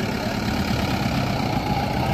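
Engine of a loaded pickup truck running low and steady as it moves off.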